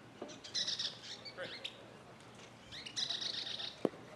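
A bird singing in two short bursts of high chirps, about half a second in and again around three seconds in. A single sharp knock just before the end.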